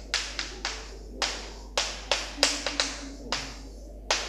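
Chalk tapping and knocking on a chalkboard as someone writes: about a dozen sharp, irregular clicks, one at each stroke or dot of the chalk.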